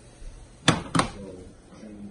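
Two sharp knocks about a third of a second apart, the second ringing briefly: a frying pan knocked against a flat glass-top hob as it is handled.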